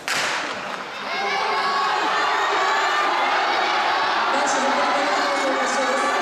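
A starting pistol fires once, with a short echo, to start an 800 m race. About a second later the crowd of spectators starts cheering and shouting, and the cheering stays loud and steady.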